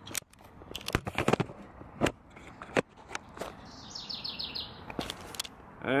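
A bird trilling, a quick run of high chirps about four seconds in, over scattered sharp clicks and knocks.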